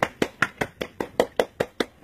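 A rapid, even series of about ten sharp knocks, roughly five a second.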